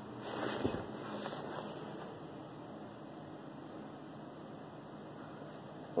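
Faint rustling of a phone being moved while it records, strongest in the first second or so, then a steady low hiss of room tone.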